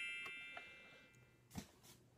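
The fading ring of a single bell-like metallic ding, its high overtones dying away over about the first second, then near silence with one faint click.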